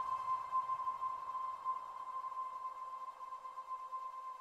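LayR synthesizer on an iPad sounding a single held high note from a resonant noise-choir patch: one steady tone with faint overtones that slowly fades.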